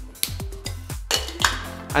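Background music, with two sharp clinks of a bottle knocking against a metal cocktail shaker tin, one about a quarter second in and one near a second and a half.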